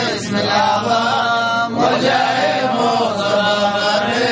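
A group of men chanting an Arabic devotional supplication together, a continuous melodic chant with sustained voices.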